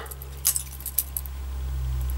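Metal butterfly knife (balisong) clicking and rattling as its handles swing around during a flipping trick: one sharp clack about half a second in, then a few lighter ticks. A low steady hum runs underneath and swells slightly toward the end.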